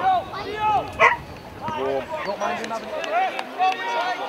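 A dog barking in short, irregular barks, mixed with men's voices calling out across a football pitch.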